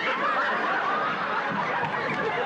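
Studio audience laughing at a joke: many people laughing together in a steady, sustained wave.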